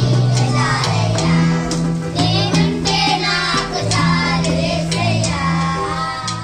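Children singing a song together to electronic keyboard accompaniment, with sustained bass notes and a regular beat.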